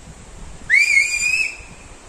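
A single loud whistle, sliding quickly up at the start and then held for about a second before it fades, a signalling whistle called out to others.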